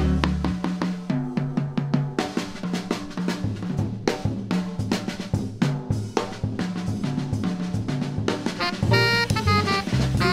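Jazz drum kit break: dense snare strokes, rimshots and bass drum hits, with the double bass and piano still going underneath. The saxophone comes back in about nine seconds in.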